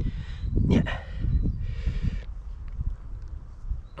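Wind buffeting the microphone, a rough low rumble that never lets up. About a second and a half in, a microfibre towel sweeps over the car's paint with a brief hiss.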